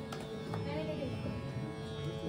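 Tanpura drone: a steady, sustained hum of plucked strings holding one pitch, played softly.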